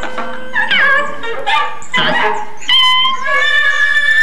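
Free-improvised music from saxophone, guitar and keyboards: short phrases of bending, yelping pitches, then a steadier held chord from about three seconds in.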